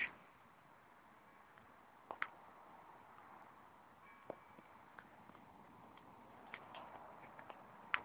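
Near silence: faint hiss with a few brief faint clicks, a couple about two seconds in and more scattered through the second half.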